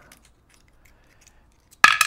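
Faint small clicks of pliers working on a brass lock cylinder, then near the end one loud, sharp metallic snap with a short ring as a stubborn part is pried off.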